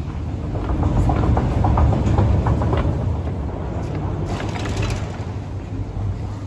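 Long metro escalator running: a steady low rumble, with light clicks from the moving steps in the first few seconds.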